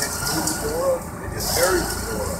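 Faint, indistinct voices of people talking over a steady low rumble.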